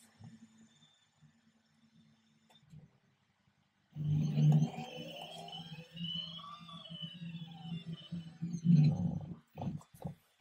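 DOBOT Magician robot arm's stepper motors whining as the arm drives to its home position during homing, starting about four seconds in. The pitch rises and then falls as the joints speed up and slow down, with a louder burst near the end.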